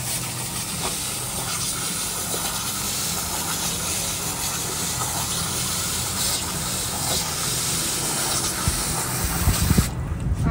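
Garden hose spray nozzle jetting water into a plastic kiddie pool: a steady hiss of spray and splashing water, with a few louder low bumps near the end.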